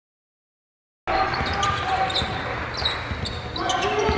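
Silence for about the first second, then the live sound of a basketball game cuts in suddenly: sneakers squeaking on the hardwood court, the ball bouncing and players calling out.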